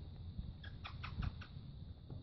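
A puppy nosing and chewing at something among the gravel: a quick run of about half a dozen small crunching clicks near the middle.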